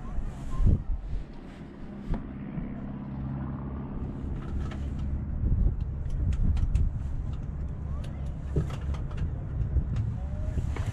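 Harvard's Pratt & Whitney R-1340 Wasp radial engine idling steadily, heard from the open cockpit. Sharp clicks and knocks sound over it, one about two seconds in and several more in the second half.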